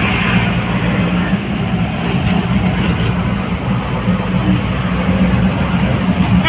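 Auto-rickshaw engine running steadily with road and wind noise, heard from inside the open passenger compartment while it drives.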